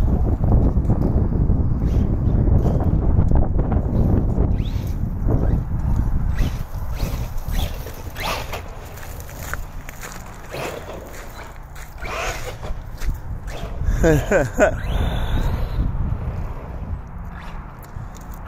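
Low wind rumble on the phone microphone for the first several seconds, then a few short rising whirs from a small electric RC truck's motor, and a man laughing near the end.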